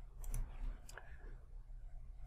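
A few faint computer mouse clicks, two close together about a third of a second in and another just under a second in, over a steady low hum.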